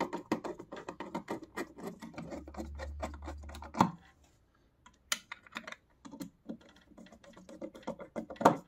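Rapid clicking and small metal knocks as a hand screwdriver drives screws into the steel plate of a plywood knife-sharpening jig. There is one loud knock near four seconds, then a short pause before the clicking starts again.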